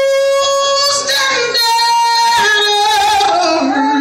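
A woman singing gospel solo into a microphone: she holds a long high note, then a second held note, and moves into winding, falling runs near the end.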